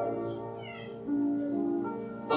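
Keyboard quietly playing a slow hymn of invitation in held notes, without singing; a new lower note comes in about a second in. A brief wavering high tone sounds about half a second in.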